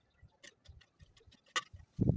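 Light, irregular metallic clicks and ticks of a thin steel construction rod being handled and drawn through a wall-mounted bending jig, with one sharper click about one and a half seconds in.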